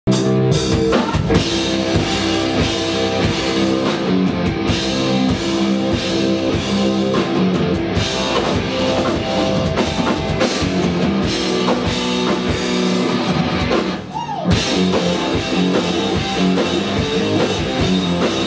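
Rock band playing live, with drum kit and guitars. About fourteen seconds in, the drums briefly drop out and a guitar note slides, then the full band comes back in.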